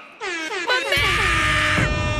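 Game-show sound effect: a run of overlapping falling tones, then a loud, steady horn-like blast from about a second in.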